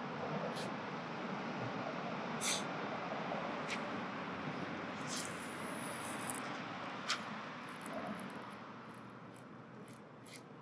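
A steady rushing background noise, with a few faint sharp clicks scattered through it, fading slightly near the end.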